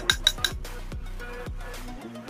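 A metal spoon clinks against a glass bowl about four times in quick succession in the first half second, as milk powder is tapped off it. Background music plays throughout.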